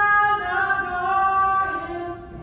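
A woman singing long held notes in a gospel worship song, stepping down to a lower note about half a second in and tailing off near the end.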